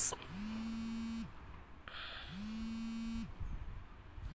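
Smartphone vibrating for an incoming call: two buzzes about a second long and about a second apart, each spinning up briefly before holding a steady pitch.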